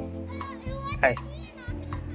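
Children's high voices calling out over steady background music, with a short laugh and a man's "hi" about a second in.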